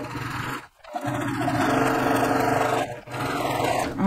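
Electric sewing machine stitching, its motor and needle running steadily, stopping briefly about a second in and again about three seconds in.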